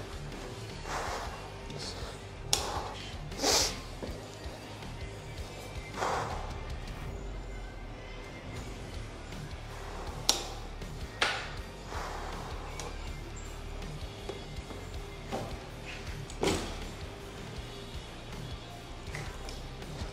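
A 26-inch BMX freestyle bike on a tiled garage floor: scattered thumps and scuffs from its tyres and frame, a few seconds apart, the loudest about ten and sixteen seconds in. Background music plays throughout.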